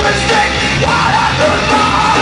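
Live rock band playing at full volume, with a singer's voice over the band.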